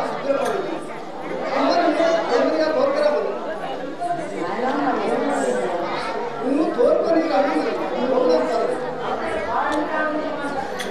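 Speech: stage actors delivering their dialogue in a folk drama, one voice after another with no music under it.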